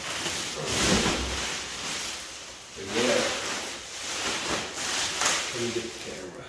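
Clear plastic wrapping crinkling and rustling as a large vinyl crash pad is pulled free of it and out of its cardboard box. Two brief vocal sounds come in, about three seconds in and near the end.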